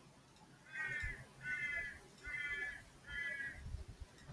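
A bird calling four times in a row, each call about half a second long, evenly spaced about three-quarters of a second apart.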